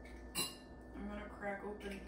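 One sharp clink of kitchen dishware about half a second in, then a person's voice in the second half.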